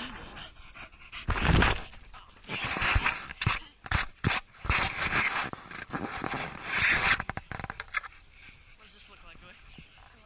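Dog sniffing and panting hard with its nose down a rabbit burrow, right at the microphone: loud breathy snuffles in bursts every second or two, with a few sharp knocks in the middle and quieter breathing near the end.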